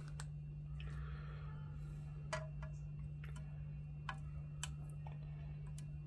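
Faint, scattered clicks and light taps as salt is tipped from a small container into a plastic jug of water, over a low steady hum.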